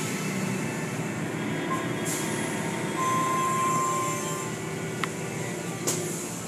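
Automatic car wash running: water spray and wash machinery running steadily over a car, with a thin steady tone coming in a few seconds in.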